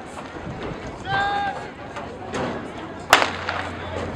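Starting gun fired once to start a race: a single sharp crack with a short ring-out a little after three seconds in. A short steady tone sounds about a second in, over spectators' chatter.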